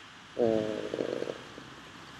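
Speech only: a man's single drawn-out hesitation "uh", then quiet room tone with a faint steady hiss.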